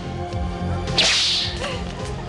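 Steady background music with a single sharp, hissing swish about a second in, like a whip crack, that fades over about half a second.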